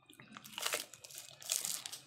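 Soft, scattered crinkling of a plastic freeze-pop sleeve as the ice pop inside is bitten and sucked, in a few short rustles.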